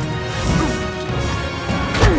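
Film score music over the sound effects of a melee fight, with blows and crashes landing throughout and a heavy impact at the very end.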